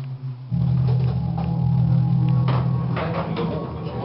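Music with a low sustained drone and a few drum hits; the drone swells louder about half a second in.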